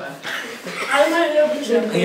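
Speech only: people talking in a small room.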